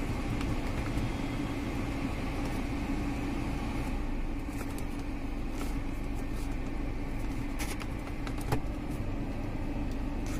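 Steady rush of a 2014 Hyundai Grand i10's heater blower fan running, with the petrol engine idling underneath, heard from inside the cabin. A faint click comes about eight and a half seconds in.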